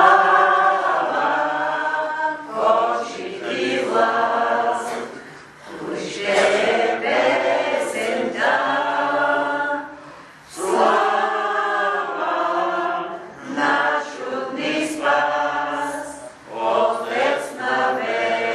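A group of voices singing a hymn together, in long phrases with short breaks between them.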